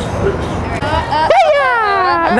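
A woman's high-pitched scream of fright at a jump scare. It starts about a second and a half in and slides steadily down in pitch.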